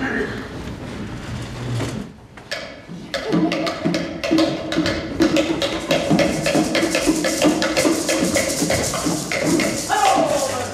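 Live stage music: rapid wooden percussion clicks over a held pitched tone, starting after a short lull about three seconds in.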